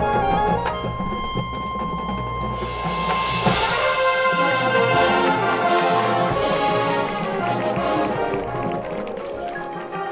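High school marching band playing its show music: held notes over low sustained tones, then the full brass section comes in about three seconds in, with percussion underneath.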